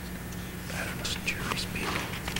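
People whispering to each other away from the microphones, starting about half a second in, over a steady low electrical hum.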